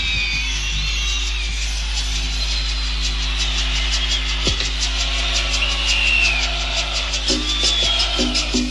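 Audience tape of a stadium concert: crowd noise with whistles gliding up and down over a steady low hum, and a quick even percussion rhythm, about four strokes a second, coming in about halfway through.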